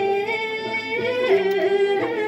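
Women singing a Bhutanese boedra folk song, long held notes with ornamented turns that step to a new pitch partway through.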